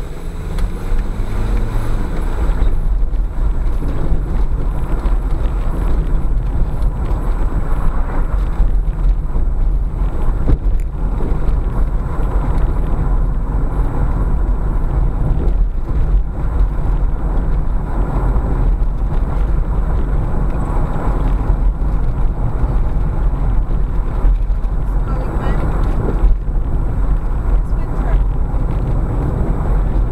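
Car driving on a country road, heard from inside the cabin: a steady low rumble of engine and tyre noise as it picks up speed.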